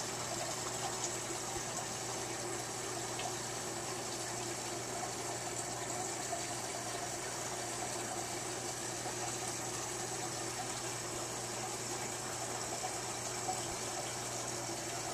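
Steady bubbling and water churn from a large aquarium's aeration bubbles and filter, with a steady low hum underneath.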